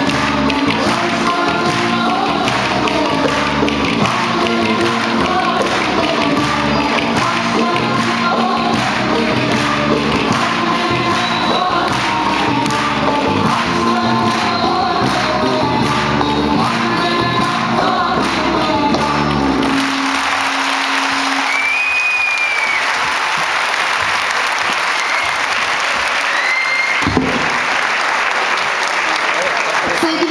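Live Turkish folk dance music with a steady beat and the click of wooden dance spoons, stopping about two-thirds of the way through. Audience applause then takes over, with a couple of whistles.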